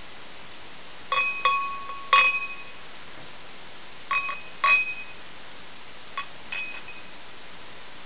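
Glass beer bottle's neck clinking against the rim of a glass during a pour: about seven light taps, each ringing briefly, the loudest about two seconds in.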